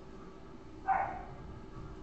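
A single short, yelp-like call a little less than a second in, over a faint steady hum.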